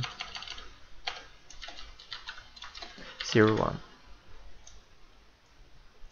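Computer keyboard typing: a quick run of keystrokes over the first three seconds as a name is typed in. A short voiced "um" comes a little past three seconds, then a few scattered faint clicks.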